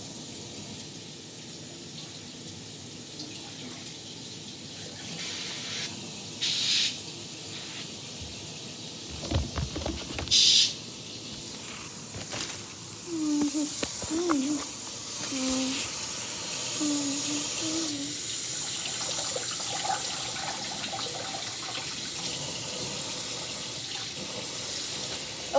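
Kitchen faucet running as raspberries are rinsed in their plastic container, with two brief louder gushes of water and a few knocks near the middle.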